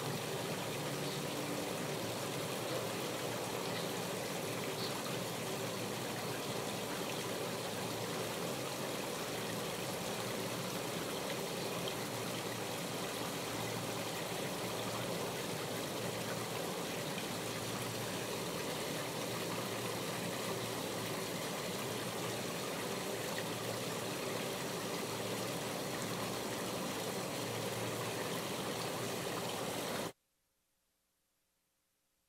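Water trickling and splashing steadily from a small rock waterfall into a garden pond, an even running-water sound that stops abruptly at the end.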